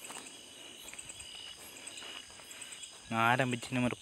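Faint, steady chirping of crickets in the background, with a man's voice starting to speak about three seconds in.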